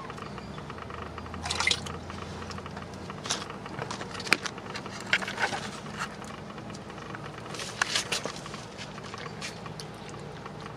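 Cooked corn kernels and their cooking water poured from a plastic container into a disposable bowl, splashing and pattering in irregular spurts.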